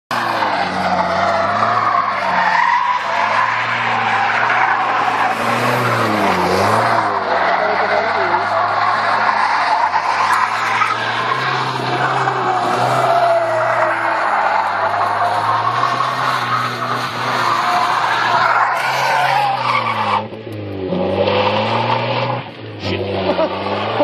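First-generation Mazda MX-5 Miata drifting: its four-cylinder engine revving hard, the pitch rising and falling as the throttle is worked, over continuous tyre squeal. The engine sound drops off briefly twice near the end.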